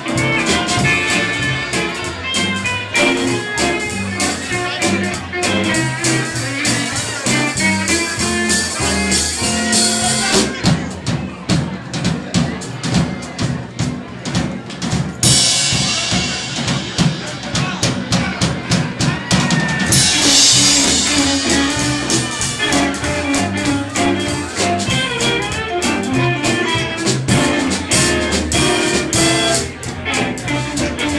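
Live band of hollow-body electric guitar, upright bass, drums, steel guitar and fiddle playing an instrumental passage in a western swing style. About ten seconds in the drums take a break largely on their own, with rapid hits and a bright cymbal wash, before the full band comes back in around twenty seconds.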